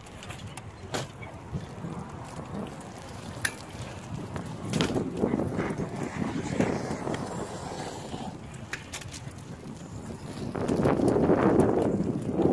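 BMX bike riding on an asphalt court: a rolling tyre noise that swells twice as the bike comes close, with a few sharp clicks and some wind on the microphone.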